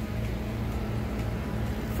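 A steady low hum with a faint, even pulsing in its lowest tones.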